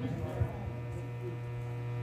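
Steady electrical mains hum and buzz from a PA sound system, unchanging throughout.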